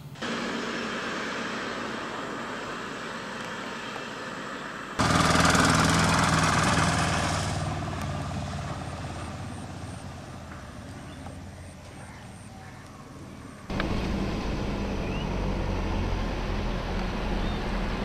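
Steady engine and travel noise of a moving vehicle, in three stretches joined by abrupt cuts. The second stretch opens with a loud hiss that fades over a few seconds, and the last has a strong low rumble.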